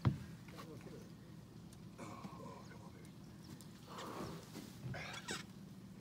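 A sharp knock right at the start, then a low steady hum with faint, murmured voices.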